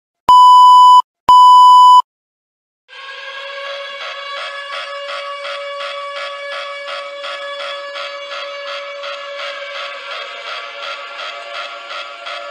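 Two loud, long electronic beeps on one steady pitch, then after a second's silence a sustained electronic alert tone of several pitches that pulses rapidly and evenly, sounding the attack warning of a mock emergency broadcast.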